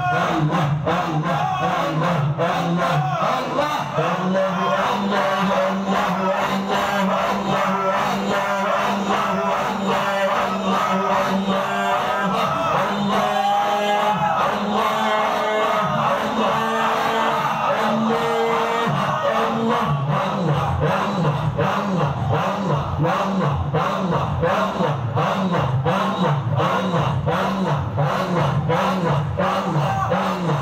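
A large group of men chanting zikir in unison, a continuous rhythmic congregational chant. For the first twenty seconds or so a held low note runs under a higher melodic line. After that it changes to a deeper chant of short, evenly repeated phrases.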